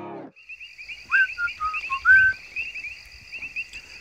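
Music cuts off just after the start. Then a steady outdoor trilling chorus of frogs runs on, with a few short whistled notes, the loudest sounds, between about one and two and a half seconds in.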